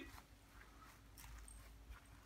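Near silence: faint outdoor background with a low rumble and a few soft ticks.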